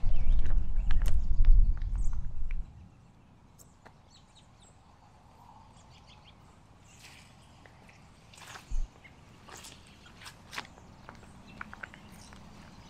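A low rumble for the first two and a half seconds, then scattered bird chirps; about nine seconds in, a boot comes down on an Osage orange (hedge apple) on wet pavement with a single thud, followed by small crackles as the fruit gives way.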